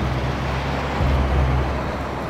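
Road traffic: cars driving past, a steady wash of tyre and engine noise with a low hum underneath.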